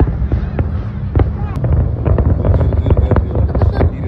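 Aerial fireworks going off: scattered sharp bangs, becoming a dense crackle from about halfway through, over a steady low rumble.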